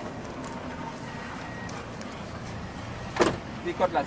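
Steady low running noise of a vehicle engine, with a short loud shout about three seconds in and brief voices just before the end.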